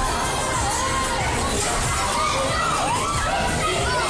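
Children shouting and cheering on a bumper car ride, many rising and falling cries over a steady, loud fairground din.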